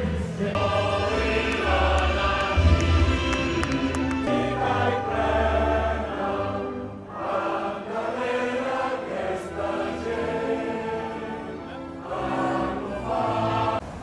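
A large crowd singing a song together, many voices in unison like a choir.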